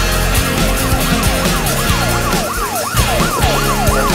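Police car siren sweeping quickly up and down in pitch, about three sweeps a second, over rock band music.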